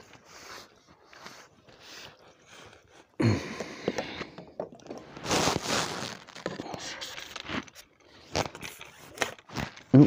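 Close handling noise from an angler's tackle: rustling, scraping and crunchy knocks as the landing net holding a freshly caught perch and the fishing pole are handled. Sparse clicks at first, then a run of louder scrapes and knocks from about three seconds in.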